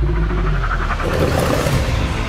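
Movie trailer sound design: a deep, steady rumble with a rising, hissing whoosh that swells about a second in and fades near the end, leading into the title card.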